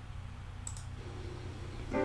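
A single short click about a third of the way in, over a low steady hum; faint music fades in during the second half and comes in fully right at the end.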